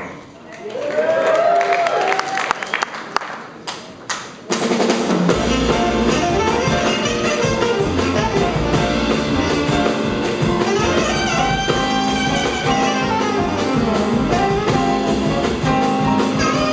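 Live jazz quintet: a quiet solo opening phrase, then the full band with upright bass, piano and drums comes in about four and a half seconds in and plays on steadily, with a male baritone voice singing over it.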